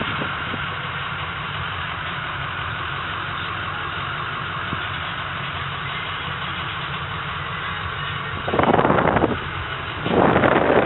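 A 2006 Ford F-250's 6.0L V8 diesel idling steadily, heard from inside the cab. A brief louder rush of noise comes near the end.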